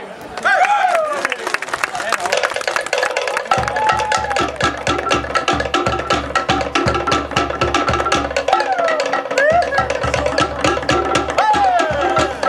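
Polynesian drum ensemble playing fast, dense rolls on wooden log drums, with a deep drum beating a steady pulse from about three and a half seconds in. Short gliding shouted calls ring out over the drumming several times.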